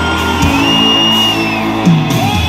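Live pop concert music played loud through a stage sound system, with held chords, a hit about half a second in and a high note that glides up, holds and falls away.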